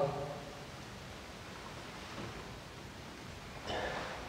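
Quiet room tone with a faint, even rustle, and a short voice sound near the end.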